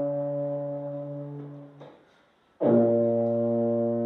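Solo baritone-type brass horn played slowly. One long held note fades away just before the two-second mark, and after a short breath a new sustained note begins.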